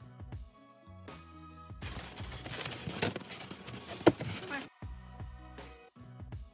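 Background music with a bass line and beat, which drops out about two seconds in for a scratchy, crunching stretch lasting about three seconds. That stretch is a craft knife being drawn through a thermocol sheet along a metal ruler, and it ends with a single sharp squeak before the music returns.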